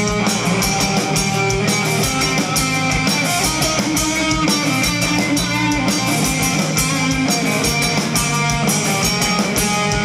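A rock band playing live and loud, with electric guitar over a drum kit, steady and unbroken.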